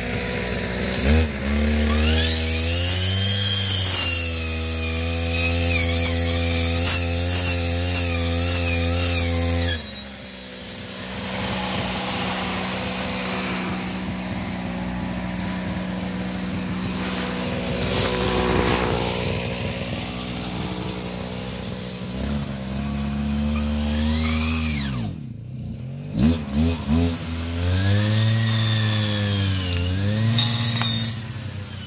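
Maruyama NE500 brush cutter with a circular saw blade: the engine revs up about a second in, holds high speed for about eight seconds, drops to idle, then idles. Near the end it is revved up and down several times.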